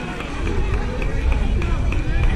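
Wind rumbling on the microphone, growing stronger about half a second in, over faint voices of people talking.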